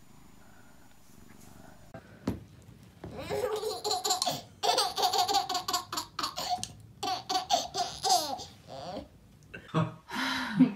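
A baby laughing in a long run of short, high-pitched giggles, starting about three seconds in and going on until shortly before the end.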